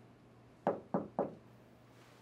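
Three quick knocks on a door, about a quarter of a second apart, a visitor knocking.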